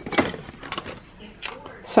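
A few short knocks and rustles of items being moved on a pantry shelf as glass jars of pasta sauce are picked up, with a woman's spoken word at the end.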